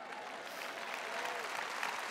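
Large arena audience applauding, the clapping building gradually, with faint voices calling out in the crowd.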